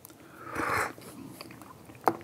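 A soft mouth sound: a short draw of air lasting about half a second, starting about half a second in, followed by a few faint ticks.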